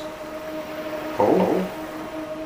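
A man's voice asking "Paul?" once, about a second in, over a steady low hum.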